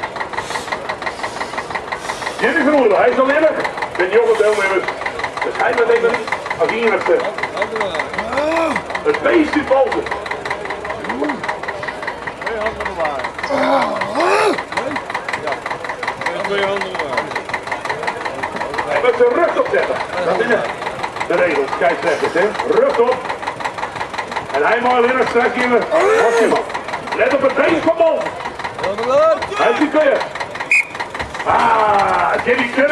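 People talking throughout, with an engine running steadily underneath.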